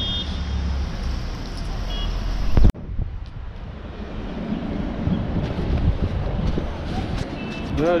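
Road traffic: a steady engine rumble with two short high beeps, cut off abruptly a little under three seconds in. After that, a quieter outdoor background with light clicks and clatters of handling.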